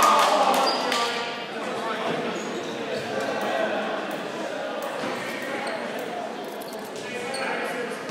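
Voices of players and spectators echoing in a large gymnasium, dying down over the first second or so, with scattered thuds of a volleyball bounced on the hardwood floor and brief sneaker squeaks.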